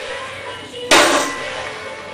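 A 220 kg deadlift bar, loaded with coloured plates, lowered to the floor, the plates landing with one sharp impact about a second in. Background music plays underneath.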